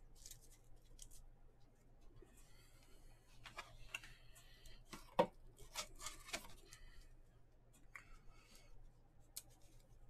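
Baseball cards being handled and stacked on a mat: faint scattered slides, taps and clicks of card stock, the loudest a sharp tap about five seconds in.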